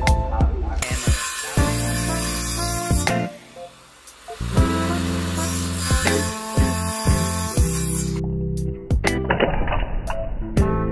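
Background music, with a circular saw cutting shallow kerfs across a wooden board mixed in under it: two stretches of saw noise a few seconds each, with a short break between them.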